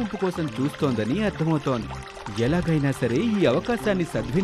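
A voice speaking Telugu in a cartoon character's dialogue or narration, over background music.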